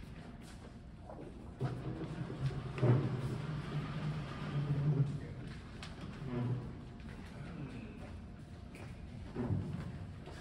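Low voices talking quietly in a large hall, mostly in the first half, with scattered knocks and shuffling as chairs, stands and instruments are moved about.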